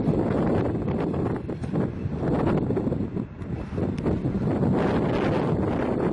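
Wind buffeting the microphone, with a passenger train's coaches rolling away down the track underneath it.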